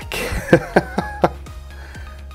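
A person laughing briefly, a few short chuckles, over background music.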